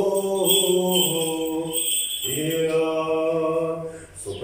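A man's voice chanting an Orthodox liturgical chant in long held notes, breaking off briefly about two seconds in and then resuming.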